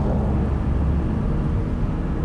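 Low, steady rumble of a car driving, engine and tyres, with no rise or fall.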